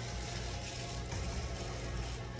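Steady indoor background noise: a low hum under an even hiss, with no distinct events.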